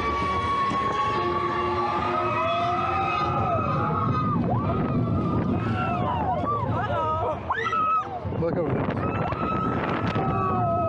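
Roller coaster riders whooping and screaming in long, wavering cries over steady wind and track noise as the Slinky Dog Dash train runs through its turns.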